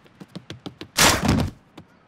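Cartoon sound effect of a body crashing through a screen door's lower pane: a few light ticks, then one loud crash about a second in.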